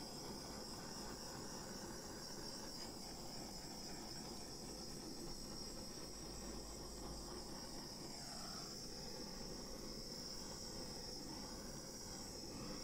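Faint, steady high-pitched whine over a low, even hiss: constant background room tone.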